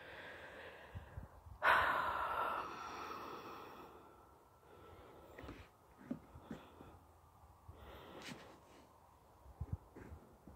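A person's loud breath out close to the microphone about two seconds in, fading over a second or so, followed by faint scattered ticks and knocks.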